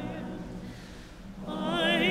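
A choir's sung phrase fades away into a brief lull. About one and a half seconds in, an operatic soprano enters with a wide vibrato.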